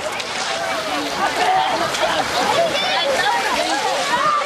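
Many children's voices shouting and calling over one another, with water splashing as they wade and run into a lake.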